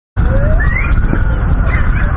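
Wind buffeting an outdoor microphone, a loud uneven rumble, with a short rising tone about half a second in.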